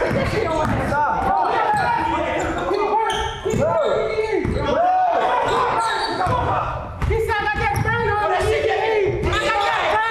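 A basketball being dribbled on a hardwood gym floor, with repeated bounces, sneakers squeaking briefly, and players' voices echoing in the large hall.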